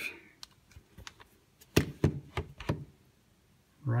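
Handling noise: a scatter of light clicks and knocks, the loudest a little under two seconds in, followed by a quick run of smaller ones.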